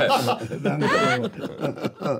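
People talking and chuckling, with quick rising voice sounds like laughter in between words.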